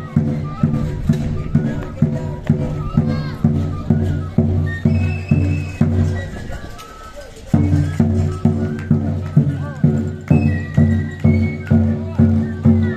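Traditional Andean dance music: a large bass drum beating steadily about twice a second under a high melody. The drum breaks off briefly past the middle, then comes back in.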